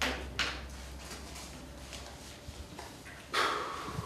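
A few brief rustles of paper sheets being handled at a meeting table, the loudest about three seconds in, over a low steady room hum.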